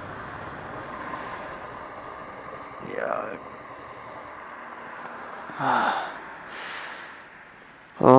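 Steady wind and road noise from a motorcycle on the move, with two short vocal sounds from the riders: a falling one about three seconds in and a rising one near six seconds, followed by a brief breathy hiss.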